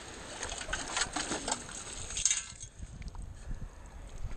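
Perforated steel sand scoop lifted from shallow water and shaken, sand and shell bits rattling and clicking against the metal basket for about two and a half seconds, then thinning to a few small clicks.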